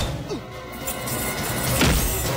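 Movie fight-scene punch sound effects over background score music: a sharp hit right at the start and another near the end, led in by a falling whoosh.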